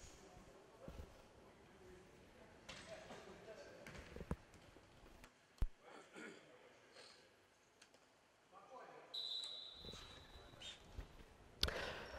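Faint hall sounds of a futsal match on a wooden floor: distant players' voices, a few sharp knocks of the ball being kicked and bouncing, and a referee's whistle held for about a second and a half to restart play after a goal.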